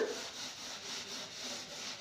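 A chalkboard being wiped clean by hand, with a soft, steady rubbing of the eraser across the slate surface in repeated strokes.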